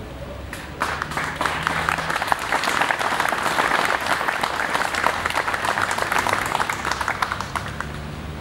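Audience applauding after a speech, starting about a second in and thinning out near the end.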